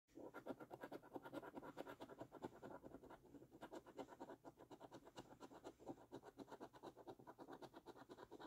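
A coin scratching the coating off a paper scratch card in rapid, repeated strokes.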